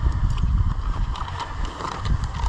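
Footsteps through grass, with wind buffeting a body-worn camera's microphone: an uneven low rumble with faint rustling ticks over it.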